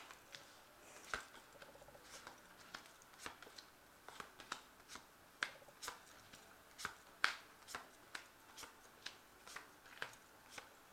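Tarot cards being drawn from the deck and dealt onto a cloth-covered table: a run of light, irregular card snaps and flicks, two or three a second.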